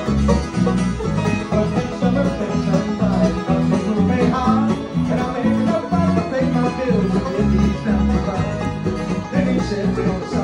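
Bluegrass band playing live, with strummed acoustic guitar and banjo over a steady, even bass line and no singing.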